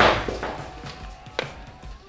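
The tail of a pneumatic-launcher shot into a laminated glass and polycarbonate panel. A sharp crack right at the start trails off over about half a second, and a single sharp click comes about a second and a half in. Faint background music runs underneath.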